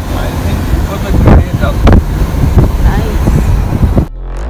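Strong wind buffeting the microphone: a loud, uneven low rumble, with a few short sharp noises on top.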